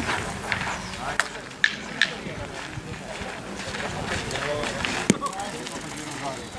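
Steel pétanque boules clacking: four sharp clacks, three close together between one and two seconds in and one about five seconds in, over a background of voices.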